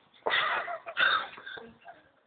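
Two short breathy bursts of a person's voice, each about half a second long, the second starting about a second in.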